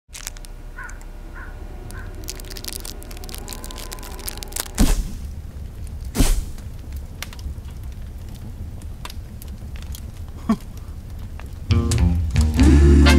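Wood fire crackling in a wood-burning stove: scattered sharp pops over a low steady rumble. Two loud thumps come about five and six seconds in.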